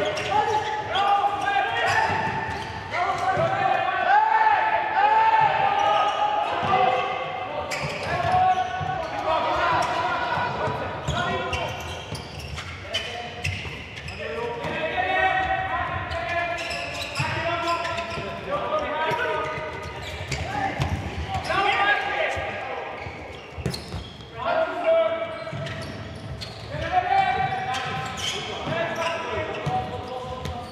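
Voices shouting and calling in a large sports hall, carrying on throughout, with the occasional knock of a futsal ball struck on the hard court.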